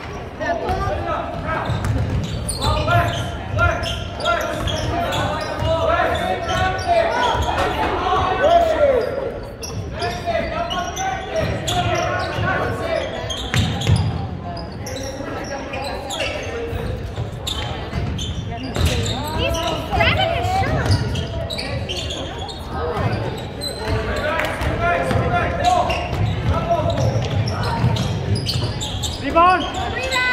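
A basketball being dribbled and bouncing on a hardwood gym floor during live play, in irregular thuds. Voices of players, coaches and spectators call out over it throughout.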